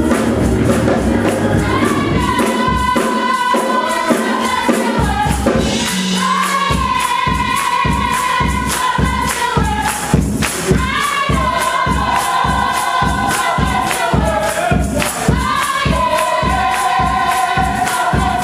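Gospel choir singing together to a steady, rhythmic beat of hand claps.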